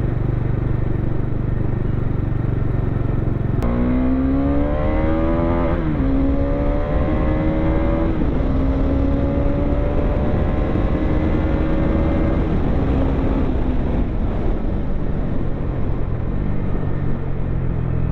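Bajaj Dominar 400's single-cylinder engine pulled hard through the gears. After a few seconds of steady low rumble, its note climbs in pitch, drops at an upshift and climbs again, three times over, then settles into a steady high-speed run. A low wind rumble runs underneath.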